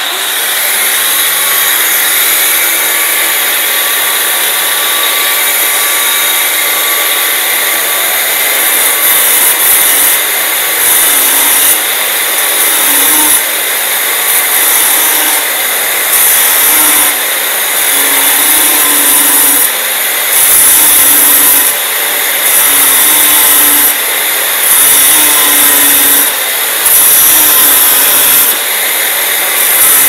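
Electric angle grinder starting up and cutting through a rusted steel toilet-bowl mounting bolt. From about nine seconds in, it gets louder in short surges roughly every second or so as the disc is pressed into the metal and eased off.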